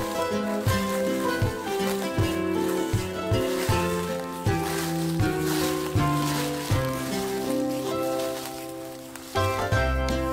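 Instrumental background music with a steady beat and a moving bass line; it drops back for a moment and picks up again near the end.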